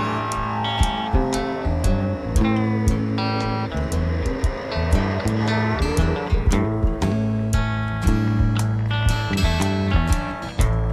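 Country-rock band playing an instrumental break, with drums, bass and guitars. A lead line above them slides up and down in pitch.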